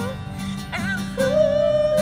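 Acoustic guitar being played, with a man's voice singing long held notes over it; a new note with a wavering vibrato comes in a little over a second in.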